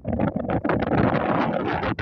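Wind buffeting the camera's microphone: a loud, rough, fluttering rumble that cuts off suddenly at the end.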